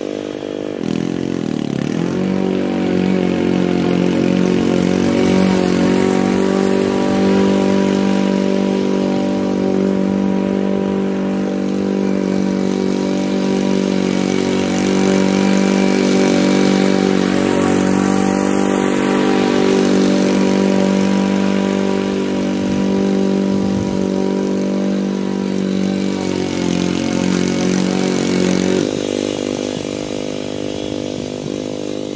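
Honda walk-behind lawn mower's four-stroke engine running steadily under load as it cuts long grass. The engine pitch dips briefly about two seconds in, and the sound drops and wavers near the end as the mower moves away.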